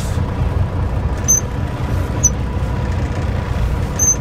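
Semi truck's diesel engine rumbling low and steady, heard from inside the cab as the truck rolls slowly through a yard. Three brief high squeaks come over it, about a second in, about two seconds in and at the end.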